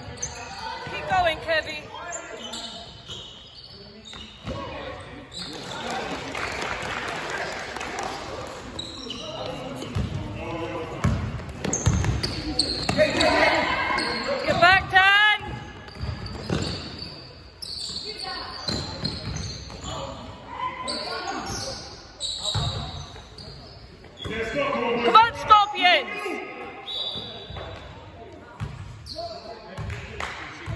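A basketball being dribbled on a wooden sports-hall floor, with players' shoes squeaking and voices calling out, all echoing in a large hall.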